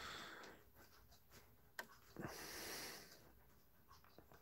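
Near silence, with two faint breaths, one near the start and one in the second half, and a single small click just before the second breath.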